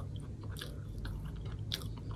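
A person quietly chewing a mouthful of food, with a few faint short mouth clicks.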